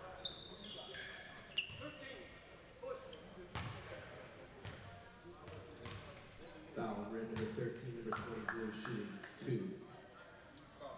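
Basketball shoes squeaking on a hardwood gym floor and a few sharp knocks as players shuffle into free-throw positions. Voices talking on court come in near the end.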